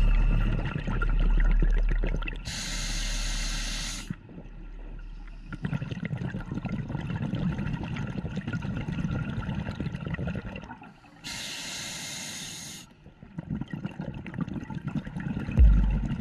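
A scuba diver breathing through a regulator underwater: a hissing inhalation a couple of seconds in and another about eleven seconds in, each followed by several seconds of bubbling as the exhaled air rises.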